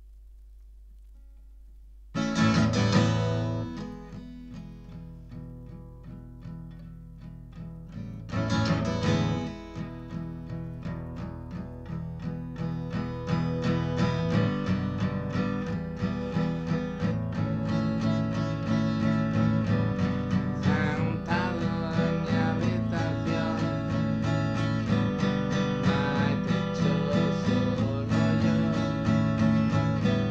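Cutaway acoustic guitar played solo: a first chord rings out about two seconds in, a second about eight seconds in, then steady strumming builds and grows louder from about twelve seconds on, as an instrumental song intro.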